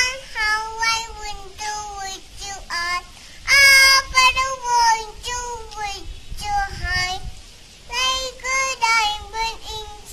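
A two-and-a-half-year-old toddler singing a nursery rhyme in a high, small voice, in short held phrases with brief breaks between them. She sings loudest a few seconds in.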